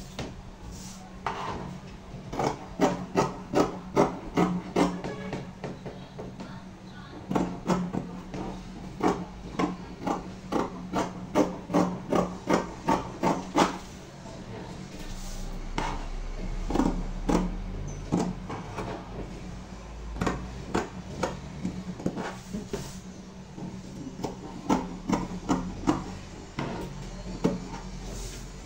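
Fabric scissors cutting through scuba fabric along a pattern edge: crisp snips of the blades in runs of about two or three a second, with short pauses between runs.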